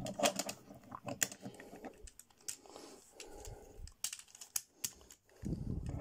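Irregular small clicks and taps of a G1 Sandstorm Transformers toy's plastic parts being folded and moved by hand, with a duller rubbing handling noise near the end.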